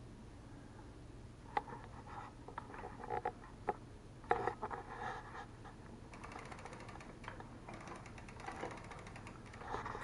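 Quiet clicks and knocks from handling a bicycle on an indoor trainer: a few sharp taps in the first half, then faint rapid ticking.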